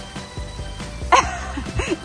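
Background music, with a child's short high laughing sounds starting about a second in.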